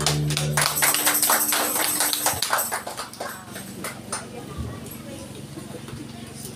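The choir's last held chord with guitar stops under a second in, then a short run of hand clapping from a small group, thinning out after about three seconds, with voices talking.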